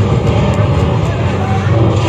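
Action-film soundtrack played loud over cinema speakers: the heavy, steady low rumble of an on-screen explosion and its debris.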